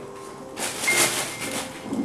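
A rustling, crackling noise lasting about a second and a half, over faint background music.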